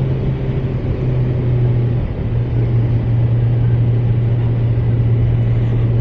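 2023 Kawasaki Z900's 948cc inline-four engine running steadily while cruising in fourth gear, under a steady haze of wind and road noise; the engine note dips briefly about two seconds in.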